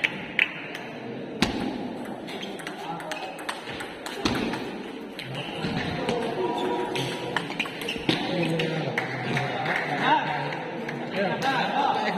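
Table tennis ball struck by bats and bouncing on the table during a rally: sharp single clicks, irregularly spaced about a second apart, over steady background chatter of voices.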